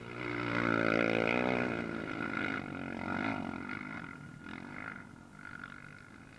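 Racing quad (ATV) engines going past at speed: the first is loudest about a second in, its pitch dropping as it goes by, and a second quad follows a little fainter around three seconds in.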